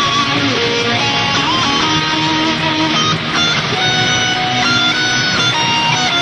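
Heavily distorted electric guitar playing a metal lead line: held notes with pitch bends and vibrato.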